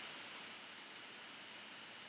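Faint steady hiss of the recording's background noise, with no distinct sounds.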